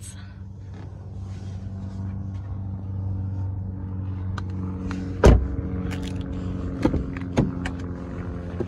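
Steady low hum of an idling car engine. There is one loud thump about five seconds in, then a couple of lighter clicks.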